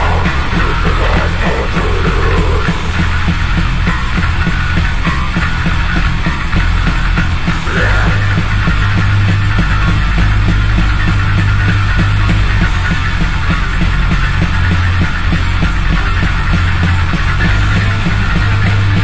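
Studio recording of a death-thrash metal band playing, with distorted guitars, bass and drums in a dense, loud mix. The low end changes about eight seconds in, as the riff shifts.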